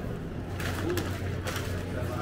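Indoor market-hall background: a steady low hum with a few sharp clicks or rustles, and one short low hoot about a second in.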